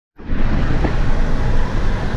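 Road and engine noise inside the cabin of a moving car: a steady rumble that cuts in sharply at the very start.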